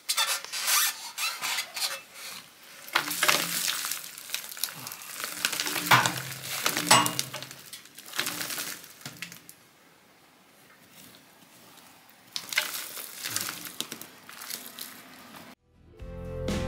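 Loose stones and rubble scraping and clinking as they are pulled by hand out of a hole in a rubble-stone wall, in bouts of rattling scrapes with a quieter pause in the middle. It cuts off suddenly just before the end.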